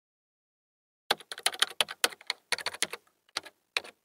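Computer keyboard typing sound effect: a quick run of key clicks in short bursts with brief gaps, starting about a second in.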